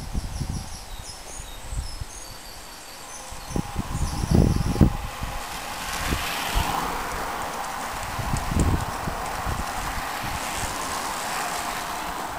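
Road bicycles passing close, with a steady hiss of tyres on tarmac from about six seconds in. Gusts of wind hit the microphone, and short high chirps sound in the first half.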